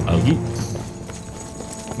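A horse's hooves clip-clopping quietly, under soft background music.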